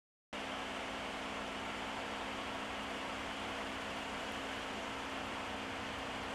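Steady background noise: an even hiss with a faint low hum. It starts abruptly a moment in and holds unchanged, with no distinct events.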